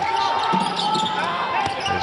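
Basketball dribbled on a hardwood court during live play, a few sharp bounces over steady arena background noise, with a broadcast commentator's voice partly over it.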